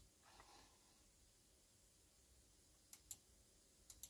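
Near silence: room tone, with two faint clicks about three seconds in and another just before the end.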